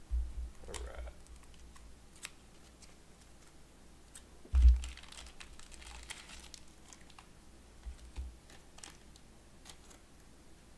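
Trading cards being gathered and handled on a table: scattered light clicks and taps, low thumps against the table at the start and again about four and a half seconds in, and a short rustle of plastic card sleeves just after the second thump.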